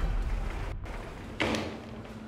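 A low rumble fading out, then a single sudden thud about a second and a half in that dies away into a faint steady hum.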